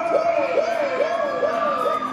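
A warbling siren, its pitch swooping down and back up in a rapid repeating pattern, over crowd noise and cheering.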